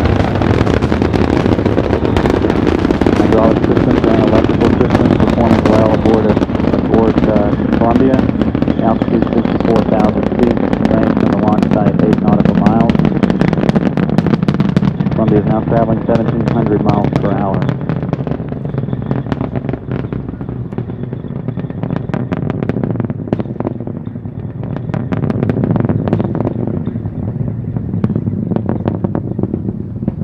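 Space Shuttle launch heard from the ground: a deep, continuous rumble from the solid rocket boosters and main engines, with a dense sharp crackling. The rumble eases a little after about 18 seconds and the crackles stand out more clearly.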